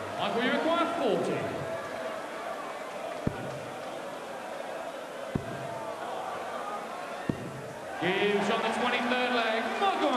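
Three darts striking a bristle dartboard about two seconds apart, each a short sharp thud, over the steady murmur of an arena crowd.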